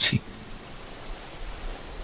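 Steady rushing noise of a sea ambience sound effect, with a faint low rumble. It is cut in with the tail of a man's narration at the very start.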